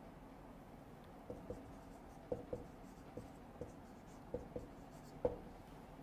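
Marker pen writing on a whiteboard: faint, short, irregular strokes and taps as figures are written.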